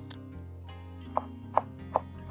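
Chef's knife chopping dill on a wooden cutting board: a few sharp knife strikes on the board, three clear ones in the second half.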